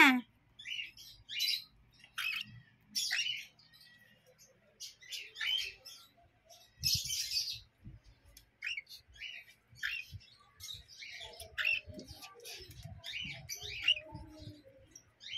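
Cockatiel and lovebird chicks chirping: short, high-pitched calls from several young birds, coming every half second to a second, with softer, lower chatter joining in near the end.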